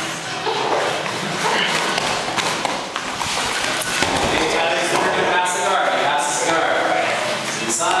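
Two grapplers' bodies thudding and shuffling on foam mats during a no-gi jiu-jitsu roll, with a sharper thump about four seconds in, over indistinct talk from people nearby.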